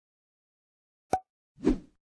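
Two short sound effects about half a second apart: a sharp click with a brief ring, then a soft plop.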